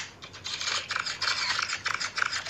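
Many camera shutters clicking in rapid, irregular succession, like a crowd of press photographers, as a drama sound effect.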